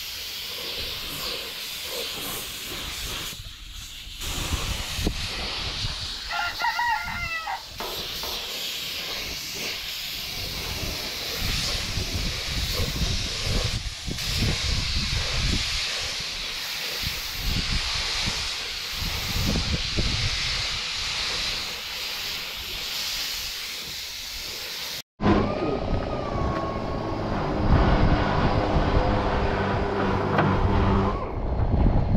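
Compressed-air paint spray gun hissing steadily as it sprays paint. A rooster crows once in the background about six seconds in. After a sudden break about 25 seconds in, a different steady humming sound with several level tones takes over.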